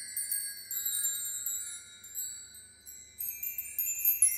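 Bright chimes ringing, many high clear tones overlapping and dying away, with fresh strikes coming in near the end.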